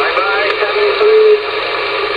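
11-metre transceiver's speaker on 27.560 MHz in receive: a steady, loud rush of band hiss, with a faint, garbled voice from a distant station warbling through it in the first second or so.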